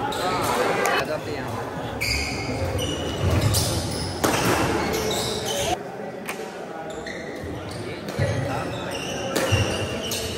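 Badminton rackets striking a shuttlecock during a doubles rally: a string of sharp hits at irregular intervals, echoing in a large indoor hall.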